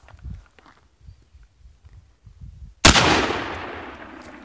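A single shot from a Heckler & Koch MR762A1 rifle in 7.62×51mm, about three seconds in: one sharp crack followed by a long echo that fades over about a second.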